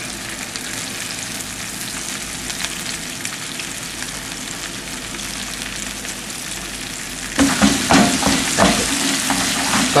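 Floured stockfish pieces sizzling in hot olive oil in a frying pan as they are seared to seal them. The sizzle turns louder and more crackling about seven seconds in.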